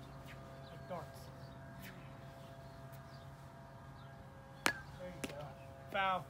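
A plastic wiffle ball bat striking a wiffle ball: one sharp crack about three-quarters of the way through, followed by a fainter click. A short voice call comes about a second in and another at the very end.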